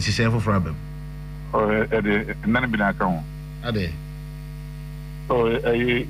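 Steady electrical mains hum underneath a voice that speaks in short stretches, with pauses between them.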